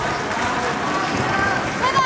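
Raised voices in a large sports hall calling out over a steady background hubbub, with a sharp high shout near the end.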